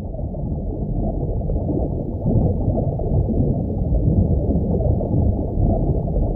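Muffled underwater rush of water: a steady low roar with no treble, growing a little louder about two seconds in.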